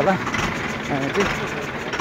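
A man talking outdoors over steady background noise.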